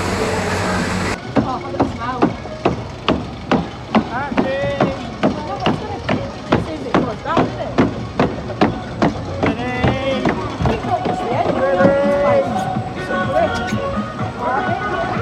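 Log flume boat being carried up the lift hill, with a steady rhythmic clacking from the lift mechanism at about three clacks a second. It begins about a second in, when a broad rushing noise cuts off.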